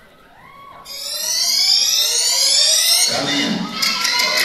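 Electronic synth riser from a dance track: a loud, buzzy multi-tone sweep that climbs steadily in pitch for about two seconds, starting about a second in. It cuts off into a low bass hit about a second before the end.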